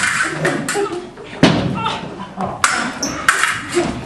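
Stage-combat swords clashing: several sharp metal-on-metal strikes, roughly a second apart, some with a short ring after.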